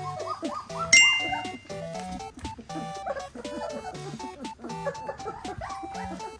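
Light background music with a bright ringing chime about a second in, over wolfdog puppies whimpering and squeaking in short, repeated rising-and-falling calls as they crowd a tray of weaning food.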